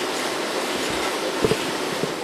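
A sheet-fed printing press runs with a steady mechanical noise while its feeder picks sheets from the paper stack. A single short knock comes about one and a half seconds in.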